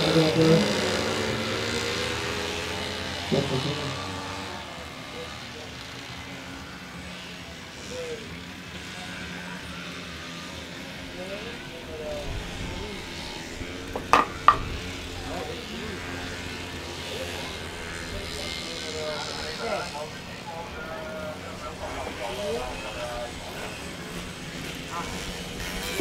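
Engines of small racing motorcycles revving and running as they lap a grass track, heard at a distance under voices. A song fades out over the first few seconds, and there is a sharp knock about fourteen seconds in.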